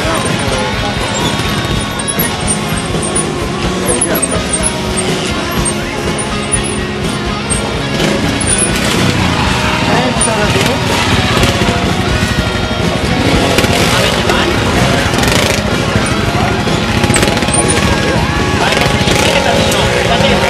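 Trials motorcycle engine revving up and down as the bike climbs a steep rock face, with spectators' voices throughout.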